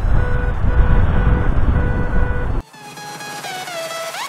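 Loud wind noise on the microphone and surf, through which a metal detector's short, repeated beeps can be faintly heard. About two and a half seconds in, this cuts off suddenly and electronic background music takes over.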